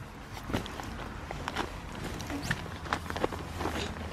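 A toddler moving about inside a tent: soft rustling with scattered light knocks and taps, spread out over a few seconds.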